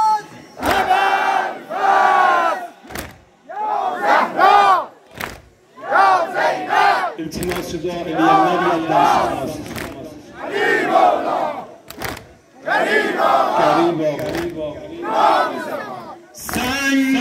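A large group of men chanting together in a Muharram mourning ritual: loud shouted phrases in unison, one about every one to two seconds with brief pauses between them. A few sharp smacks fall between the phrases.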